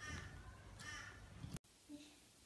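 A baby's short, high-pitched vocal calls, about one a second, over a low rumble. The sound cuts off abruptly a little past halfway, leaving faint room tone.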